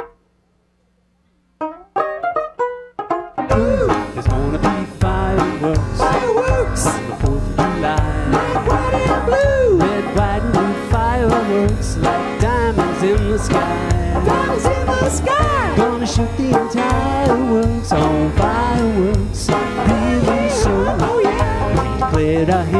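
Live band instrumental intro: after a brief near-silence, a few picked banjo notes, then about three and a half seconds in the full band comes in with banjo, drums and keyboard, playing steadily with a gliding melody line on top.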